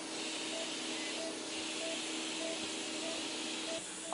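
Steady background hiss with a low hum, and a faint short beep repeating evenly about every 0.6 s, the pulse tone of a patient monitor in the procedure room.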